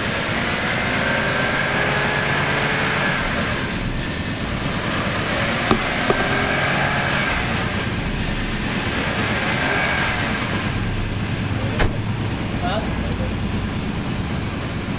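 Steady hiss of an air-powered vacuum coolant flush machine drawing the old coolant out of the cooling system, with a few short clicks.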